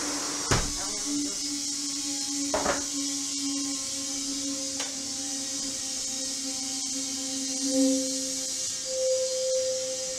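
CO2 gas flowing from a pressurised tank through its regulator and hose into an empty beer keg to purge the air: a steady hiss with a low humming tone that steps up higher near the end. Two sharp clicks come in the first three seconds.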